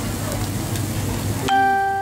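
Steady restaurant background noise, then about 1.5 seconds in a single bell-like chime strikes and rings out, fading slowly.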